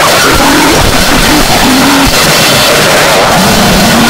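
Noisecore music: a loud, unbroken wall of harsh distorted noise with a few wavering low tones running through it.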